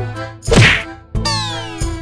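A single loud whack of a toy football being kicked, about half a second in, followed by a falling, whistle-like glide over background music with a steady beat.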